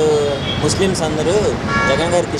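Short vehicle horn toot near the end, over street traffic noise and a man talking.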